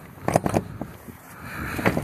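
Metal clanks and scraping from the lock-rod hardware at the foot of a semi-trailer's rear doors, handled with gloved hands: a short cluster of knocks about a third of a second in and another knock near the end.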